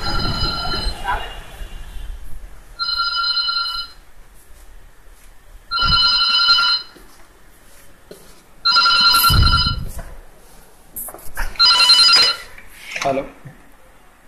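A telephone ringing: five rings of about a second each, roughly three seconds apart, each a steady chord of high tones.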